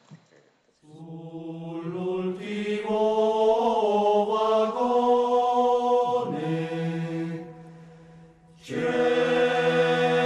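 A choir singing slow, sustained chords, starting about a second in; the phrase fades out around the eighth second and a new one begins shortly before the end.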